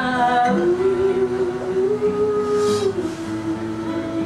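A woman singing long held notes in an acoustic Americana song, one note held for a couple of seconds then stepping down to a lower one, with acoustic guitar accompaniment.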